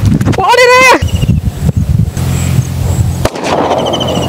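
A man's shout in the first second, then a low rumbling noise. Near the end a hiss starts as the lit firecracker catches and begins to burn, with a faint high whistle.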